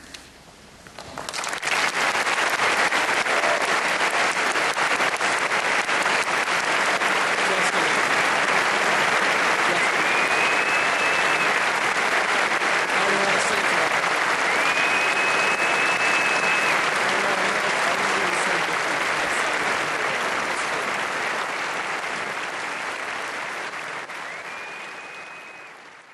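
Audience applause that breaks out about a second in after a brief hush, holds steady, and tapers off near the end, with a few high rising whistles over it.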